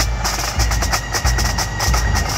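Marching pipe band playing: snare drums rattling in rapid strokes over a bass drum beating about twice a second, with bagpipes holding a steady tone.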